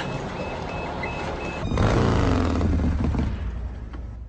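Action-film sound effects: a high electronic beep repeating a couple of times a second over a dense mechanical din, then, after a sudden cut a little before two seconds in, a loud low rumble with falling sweeps that fades away near the end.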